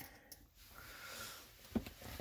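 Handling of a small plastic action figure: a few faint clicks, then a soft knock near the end, in a quiet small room.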